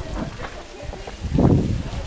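Wind buffeting the microphone over the steady rush of a waterfall, with people's voices in the background and a louder swell about one and a half seconds in.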